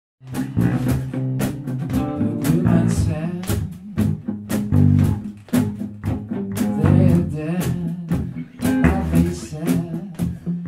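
Rock band recording with guitar and bass over a steady beat, starting just after the opening.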